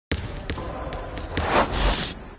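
Logo-intro sound effects: four sharp hits about 0.4 s apart over a noisy bed, then a rising noisy swell with glitchy high electronic tones as the logo appears.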